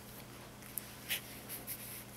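Felt-tip pen writing on paper: a few short, faint scratchy strokes, heard over a steady low hum.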